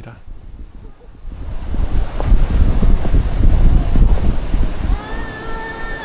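Loud low rumbling buffeting on a body-worn action camera's microphone, building up about a second and a half in and easing near the end. Near the end a toddler's voice gives a short, steady held cry.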